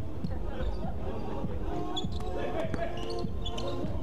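A basketball bouncing on an indoor court floor during play, a few separate bounces, with players' voices faintly in the background.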